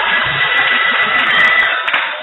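Loud church music and congregation noise blended into a dense wash, with a steady high tone held through most of it.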